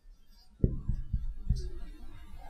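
Marker writing on a whiteboard: about five soft, low knocks at uneven spacing as the pen strokes strike the board.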